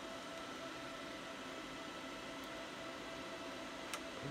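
Steady, even whir of cooling fans in a rack of running network switches, with faint steady hum tones under it. A single short click sounds near the end.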